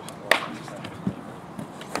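A single sharp hand clap about a third of a second in, the signal to start a rugby breakdown drill, followed by a duller thump as the players move on the ground.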